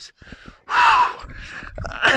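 A tennis player's short, breathy exhaled grunt, an 'ah' falling in pitch, about a second in, as he strikes a forehand; another grunt starts at the very end.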